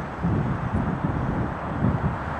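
Wind buffeting the camcorder microphone over a low, uneven outdoor rumble of distant city traffic.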